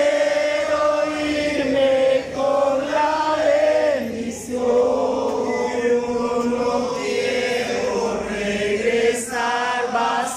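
Church congregation singing together, men's and women's voices holding long notes.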